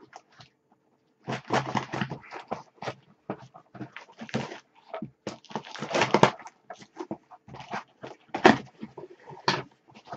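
A cardboard parcel being opened by hand: a run of short, irregular scrapes, rustles and knocks as the tape is cut and the box worked open.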